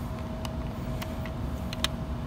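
Low, steady outdoor background rumble with a faint continuous hum and a few light clicks about half a second in and near the end.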